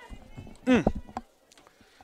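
A man's short 'mm' with a falling pitch about half a second in, over a faint low rumble, then near quiet.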